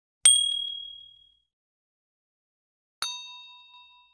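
Two ding sound effects from a subscribe-button animation. The first is a bright high ding about a quarter second in that rings out over about a second. The second is a lower chime of several tones about three seconds in that fades away.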